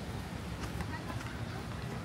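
Indistinct voices of people walking by, over a steady outdoor background hiss, with a few faint ticks.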